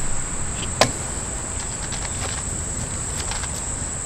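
Insects chirring steadily in one high, even tone, with a single sharp click about a second in.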